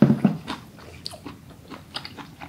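Close-miked chewing of a mouthful of braised aged kimchi and pork: wet mouth smacks and small crunches in an irregular run, with a louder low thud right at the start.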